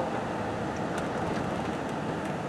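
Steady engine and tyre noise of a car being driven, heard from inside the cabin.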